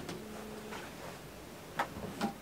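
Quiet handling sounds with one sharp click of hard plastic near the end, as the resin printer's red acrylic UV cover is taken hold of.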